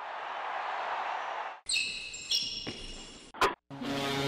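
Produced intro sound effects over a channel logo. First comes a swoosh of about a second and a half. Then high, bright ringing tones play for under two seconds, followed by a sharp click, and a low held tone begins near the end.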